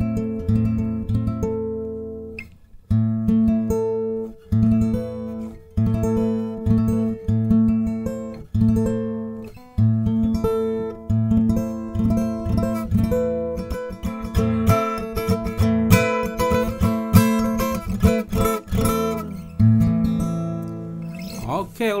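Taylor acoustic guitar strummed in a steady rhythm, playing A minor chord shapes from the fifth string at different positions up the neck. There are short breaks about 3 s and 10 s in, where the hand moves to the next shape.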